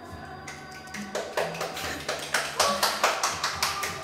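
A few people clapping their hands, starting about half a second in and growing louder, about five claps a second, over the quiet held notes at the end of a karaoke backing track.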